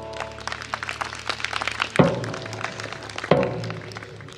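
Drum kit playing a percussion break in a live folk song: a fast run of light taps and clicks, with two heavy low drum hits, one about halfway through and one near the end.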